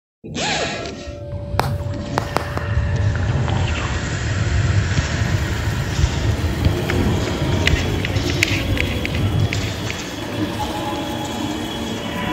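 Abstract designed soundscape: a dense low rumble layered with noisy texture, opening with a short falling tone and a couple of sharp clicks, slowly building in level.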